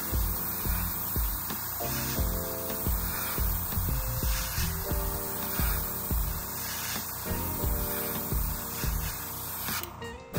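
Gravity-feed airbrush spraying paint in a steady hiss that cuts off just before the end, over background music with a steady beat.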